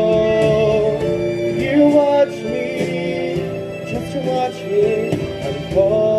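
Male solo voice singing a musical-theatre ballad into a microphone over an instrumental accompaniment. A long note is held over the first second, the music eases after about two seconds, and a new strong sung note comes in near the end.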